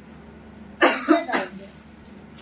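A person coughing twice in quick succession, sharp and loud, about a second in.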